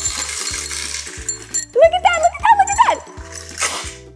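Stainless steel ball-bead chain pouring out of a glass as a chain fountain, a fast rattling clatter for about the first second and a half. A woman's wordless excited exclamation follows, over background music with a steady beat.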